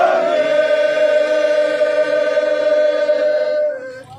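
A group of voices singing together in chorus, holding one long note that fades out near the end.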